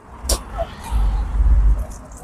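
Road traffic on a city street: a low rumble that swells for most of a second in the middle, with a short sharp click about a third of a second in.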